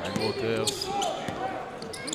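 Live basketball play on an indoor hardwood court: a ball being dribbled, with short squeaks of sneakers on the floor and voices in the hall.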